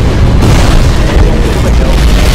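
Animated battle sound effects: a continuous barrage of explosions and booming blasts with a heavy low rumble, mixed with background music.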